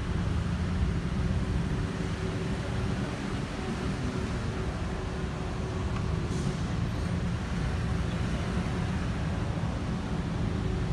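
Steady low rumble of a car's engine and tyres, heard from inside the cabin of a slowly moving car.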